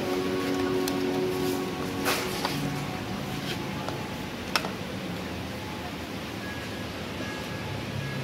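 Soft background music over a low hum, with a few light clicks about two seconds in and again near four and a half seconds, from a plastic serving scoop knocking against a plastic takeaway container as food is packed.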